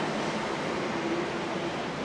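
Steady hiss of indoor room noise, like an air conditioner, with a faint steady hum in the middle.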